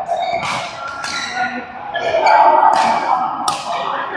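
Badminton rackets striking a shuttlecock back and forth in a doubles rally: four sharp, crisp hits at uneven intervals, echoing in a large hall.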